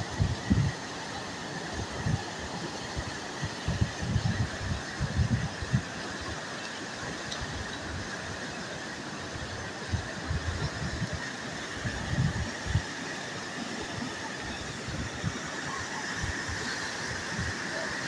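Muddy flash-flood water rushing down a riverbed, a steady wash of noise, with irregular low buffeting of wind on the microphone now and then.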